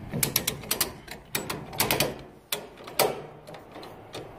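Ratchet strap buckle on a flatbed trailer being cranked to tension the cargo strap, its pawl clicking in short bursts about every half second as the handle is worked.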